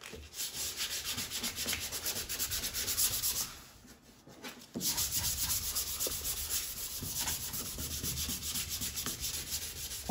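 Sandpaper held under a flat hand dry-sanding cured 2K primer filler on a car body panel: quick back-and-forth rubbing strokes, stopping for about a second near the middle before starting again.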